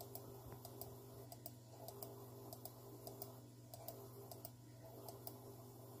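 Near silence with faint, irregular clicks from a computer being operated, over a low steady hum.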